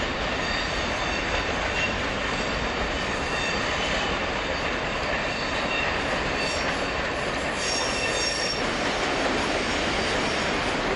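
Electric multiple unit running slowly over the points into the platform: a steady rumble of wheels on rail with thin, intermittent wheel squeal. The squeal is stronger about three-quarters of the way through as the coaches pass close by.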